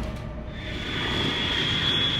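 A rumbling, airplane-like sound-effect drone laid under an animated map zoom, with a thin steady high tone that comes in about half a second in.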